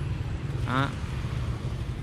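A steady low rumble, with one short spoken word in the middle.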